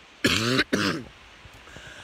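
A man clearing his throat: two short, rough bursts in the first second.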